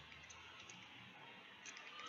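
Near silence: room tone with a few faint clicks from a computer mouse.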